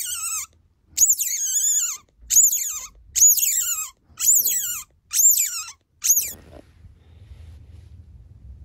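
A newborn Asian small-clawed otter pup calling: about seven high-pitched squeals, roughly one a second, each sliding down in pitch. The calls stop about six and a half seconds in.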